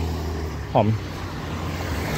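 Steady low rumble of road traffic, with a motor scooter on the road.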